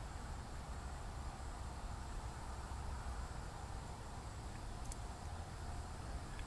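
Faint, steady low background rumble with no distinct event, and a single faint tick about five seconds in.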